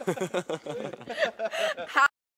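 A person chuckling and laughing in short, broken bursts of voice.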